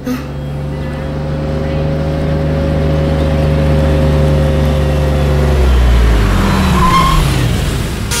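A car engine drawing nearer, its steady hum growing louder, then falling in pitch over the last couple of seconds as the car slows.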